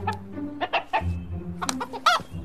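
Chicken clucking: a run of short clucks, then a couple more near the end, over background music.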